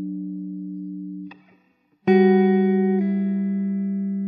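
Background music: slow guitar notes ringing out and fading. The sound dies away just over a second in, and after a short pause a new chord is struck about two seconds in, changing to another a second later.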